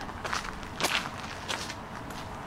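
Footsteps of a person walking at a steady pace on stone paving slabs, about three steps in the two seconds.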